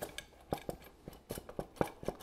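#8 Robertson screwdriver turning a clamp screw in a metal old-work electrical box, giving a string of irregular light metallic clicks and ticks as the screw draws the box's clamps down.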